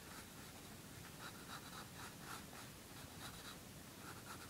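Pencil scratching faintly on paper in a series of short, quick strokes.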